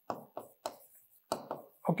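Marker pen writing on a whiteboard: about five short, separate taps and scrapes in two quick groups as letters are stroked on.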